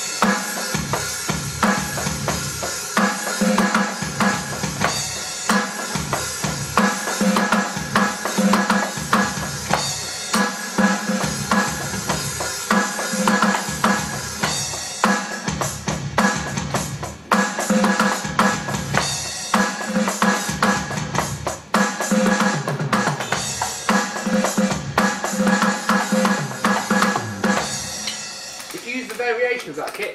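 Roland HD-1 electronic drum kit playing its rock-style kit preset: a continuous drum groove of bass drum, snare and cymbals, dense strikes with cymbal wash throughout, stopping near the end.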